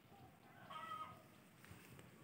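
Near silence, with one faint, brief animal call a little under a second in.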